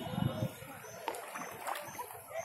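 Kayak paddle strokes in lake water, with light splashing from the double-bladed paddle.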